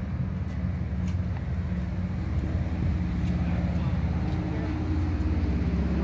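Steady low drone of an idling engine, several low tones held evenly throughout.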